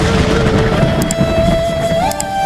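Intro music: a held flute-like note over a low rumbling whoosh sound effect, the note stepping up in pitch partway through, with two short clicks about a second in from the subscribe-button animation.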